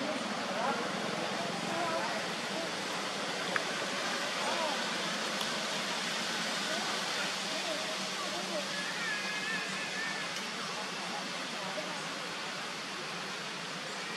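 Steady outdoor background hiss, with faint wavering high sounds over it and a single sharp click about three and a half seconds in.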